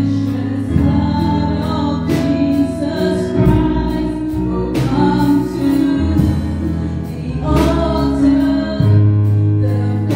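Live gospel worship song: a woman singing into a microphone over keyboard accompaniment, with sustained bass chords that change every second or two.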